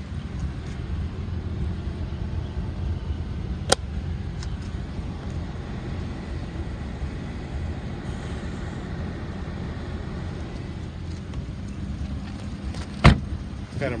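2001 Toyota Avalon's 3.0 V6 idling with a low, steady rumble; the engine has a slight misfire. A sharp click about four seconds in, and a car door shutting with a loud thud about a second before the end.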